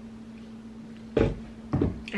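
Two thumps about half a second apart, a smartphone being put down on a wooden table, over a steady low hum.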